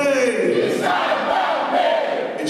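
A crowd of audience members yelling a refrain back in unison, in call-and-response with the performer.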